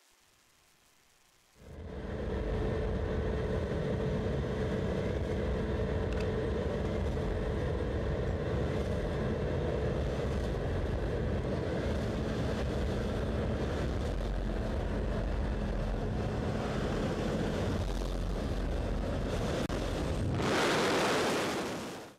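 Near silence for the first second or two, then the steady, loud drone of a skydiving jump plane's engine heard from inside the cabin. A louder hiss swells near the end and cuts off suddenly.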